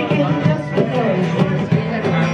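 Live acoustic folk music: a steel-string acoustic guitar strummed over steady cajón beats, with a voice singing.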